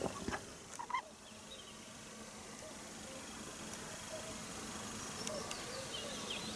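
Faint outdoor ambience with distant birds calling softly from the trees, the calls growing a little more frequent toward the end. A few light clicks and knocks come in the first second.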